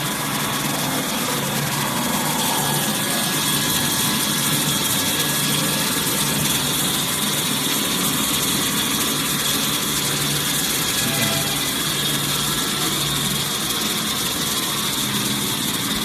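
Large toilet-paper roll cutting machine running: a steady, continuous mechanical noise with a constant high whine.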